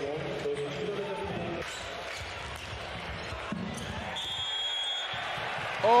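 Handball arena crowd noise over play, with the ball bouncing on the court. About four seconds in, a referee's whistle sounds steadily for about a second, awarding a penalty.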